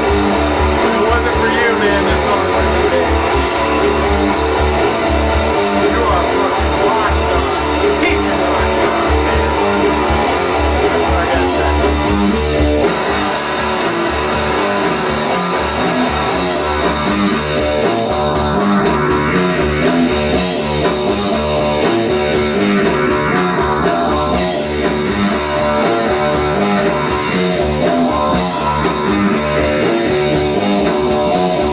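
Guitar-driven rock music, strummed guitar over a full band mix; the deep bass thins out a little before halfway through.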